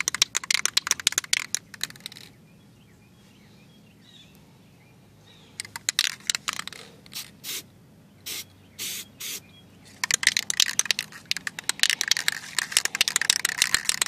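Aerosol can of spray paint being shaken, its mixing ball rattling rapidly, for about two seconds. After a pause come about six short bursts of spray, and then the shaking and rattling start again for the last few seconds.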